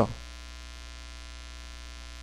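Steady electrical mains hum with a buzzy stack of overtones, unchanging in pitch and level.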